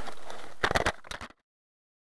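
A cluster of sharp knocks and rattles from a small car jolting over a rutted snowy road. About a second and a half in, the sound cuts off abruptly to complete silence.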